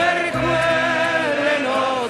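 Music: a choir singing an Italian alpine song, holding long notes between sung lines.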